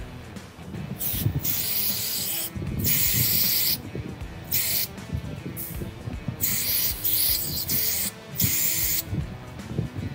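Aerosol electrical contact cleaner hissing from the can in a series of short bursts, some under half a second and some about a second long, sprayed onto an oily sensor connector plug to clean the oil off it.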